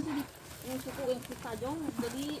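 Soft, broken-up voices of people talking some way off, after louder speech stops at the start.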